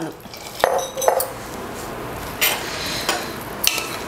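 Metal ladle stirring milk into a mixture in a stainless steel pot, knocking and scraping against the pot's side with a few sharp clinks.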